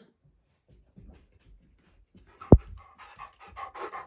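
A dog panting close to the microphone, starting just after a single sharp thump about two and a half seconds in.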